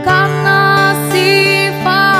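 Acoustic music: a woman singing a slow, held melody over acoustic guitar accompaniment.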